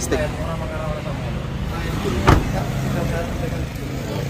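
A car engine idling steadily, with a car door shut with one solid thump a little over two seconds in.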